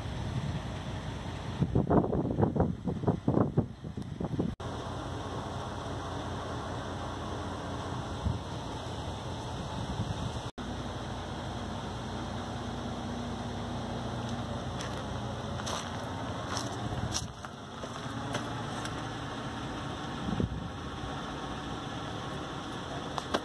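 Outdoor background noise: a steady hiss with wind buffeting the microphone for a couple of seconds near the start, and a few faint clicks later on.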